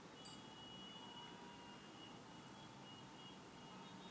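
Near silence: a faint even hiss with very faint thin high tones, and a single short click about a quarter of a second in.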